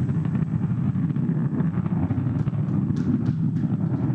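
Falcon 9 first stage's single Merlin 1D centre engine firing on its landing burn in the last seconds before touchdown: a steady low rumble with faint crackles in the second half.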